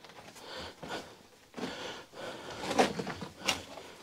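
A person breathing and shuffling over loose rubble inside a cramped rock tunnel, in uneven short bursts, with a sharper scrape about three and a half seconds in.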